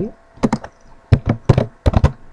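A run of sharp clicks from a computer keyboard and mouse, about eight in all, coming in quick pairs, as a line of SQL is highlighted and run.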